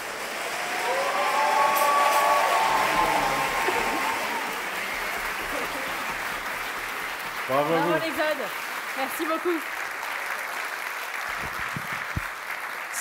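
Theatre audience applauding steadily, swelling in the first couple of seconds, just as a chamber orchestra's piece has ended. A few voices call out over the clapping.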